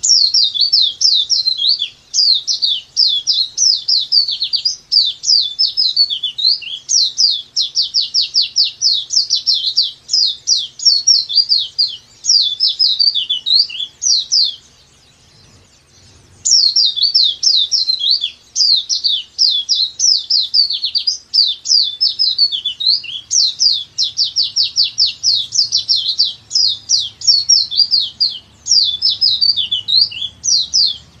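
Pleci dakbal white-eye singing its long continuous 'nembak panjang' song: a rapid, unbroken string of high chirps that each sweep downward. It sings two bouts of about fourteen seconds each, broken by a short pause about halfway through.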